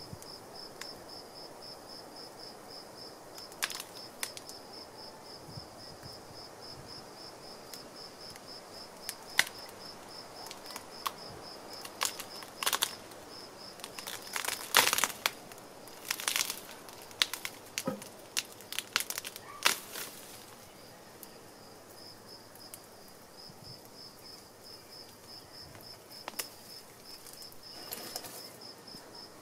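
Tree roots cracking, snapping and tearing as a stump is pulled out of the soil by hand with a compound block and tackle, in scattered sharp cracks that come thickest around the middle. A steady pulsed high chirping of insects runs underneath.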